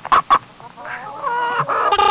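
Chicken clucking: a few quick clucks, then a longer, wavering call in the second half.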